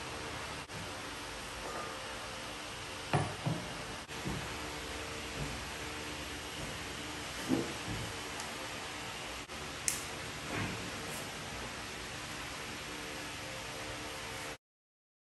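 Steady room hiss with a few light knocks and clicks of objects being handled and set down on a bedside table, as a table lamp's glass shade is fitted onto its metal stand. The loudest knocks come about three seconds in and again midway.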